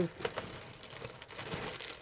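Faint rustling and crinkling of plastic-wrapped packaging as items are set down and picked up on a table, with a few small clicks.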